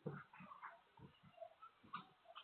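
A dog's faint, irregular short sounds, a string of brief noises, heard through a security camera's thin microphone.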